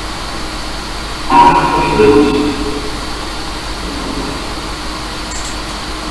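Afterlight Box ghost box software putting out steady static, with a burst of chopped voice-like fragments a little over a second in that lasts about a second.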